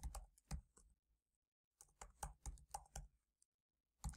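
Faint computer keyboard typing: a few keystrokes near the start, a pause of about a second, then a quicker run of keystrokes.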